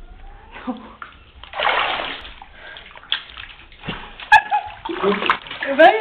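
Bathwater splashing and sloshing as she moves in the tub, loudest in a burst about two seconds in, with a sharp click after four seconds and laughter near the end.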